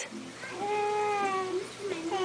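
A seven-month-old baby vocalizing: one drawn-out, high, nearly level-pitched coo lasting about a second, starting about half a second in.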